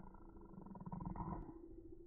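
A toddler making a playful growl, a rough, rapidly pulsing sound that stops about one and a half seconds in.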